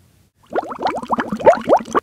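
Water gurgling and bubbling, a quick run of short rising bubbly chirps that starts about half a second in.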